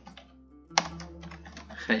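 Typing on a computer keyboard: a few light keystrokes, one sharper key strike a little under a second in, then a quick run of keystrokes.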